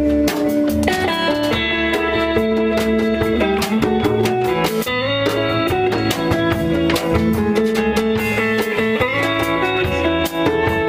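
Live band playing an instrumental passage without vocals: a Telecaster-style electric guitar and a second guitar over drums, with steady picked notes that shift in pitch every second or so.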